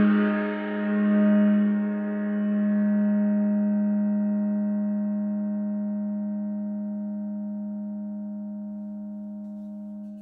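A hand-made 16-inch Vortex gong ringing out after a strike, with no new stroke. The tone wavers in the first couple of seconds, then fades slowly. The high shimmer dies away first, leaving a low hum.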